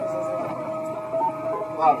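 MakerBot 3D printer's stepper motors whining at a steady pitch as the print head moves, the pitch shifting briefly now and then as the moves change. Voices in the room throughout, with a short spoken word near the end.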